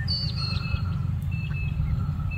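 Birds chirping in short, thin whistled notes at a few different pitches, scattered through the moment, over a steady low rumble.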